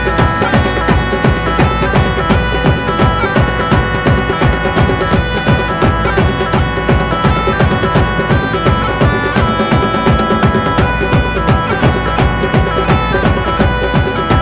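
Music: bagpipes playing a stepping melody over a steady drone, backed by a steady drum beat. The pipes come in right at the start, over drums that were playing alone.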